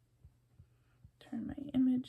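A faint low hum with a few light taps, then a woman starts speaking softly about halfway in.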